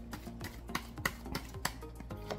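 Quiet background music under a run of light, irregular clicks and flicks from tarot cards being handled.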